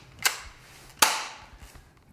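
Two sharp knocks on a table: a light tap about a quarter second in, then a louder knock about a second in that rings out briefly.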